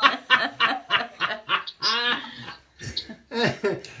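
Laughter: a run of short, breathy chuckles with a brief voiced laugh about two seconds in.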